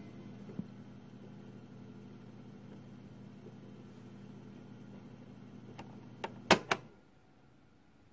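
Cassette player running on past the end of the recording, with a faint steady hum and tape hiss. About six and a half seconds in come a few sharp mechanical clicks, as of the player's stop key, and the hum cuts off.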